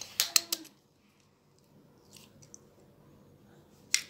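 An egg cracked against the rim of a glass mixing bowl: one sharp tap near the end. About half a second in, a few light clicks of dishware being handled.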